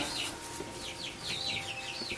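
Young chickens (chicks) peeping: a quick run of short, high cheeps about a second in, over a faint steady hum.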